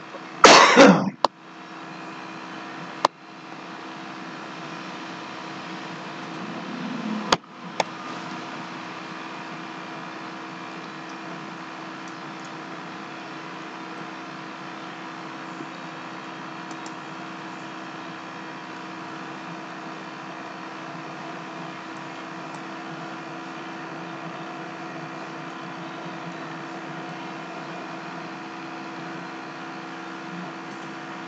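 A steady background hum with several faint steady tones. Near the start a loud, noisy burst lasts about a second, and a few sharp clicks follow in the first eight seconds.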